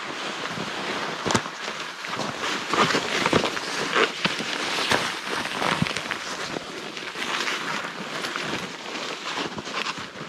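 Snowshoes and trekking poles crunching through deep snow in irregular steps, over a steady rustling hiss from pushing through snow-laden conifer branches.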